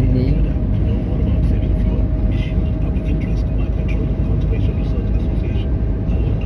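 Car cabin noise while driving: a steady low rumble of engine and tyres on the road, with a faint steady tone running through it.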